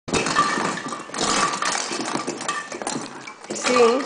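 Christmas tree baubles clinking and rattling against each other, with short ringing tones, as a small child rummages through a cardboard box full of them. A woman's voice says a word near the end.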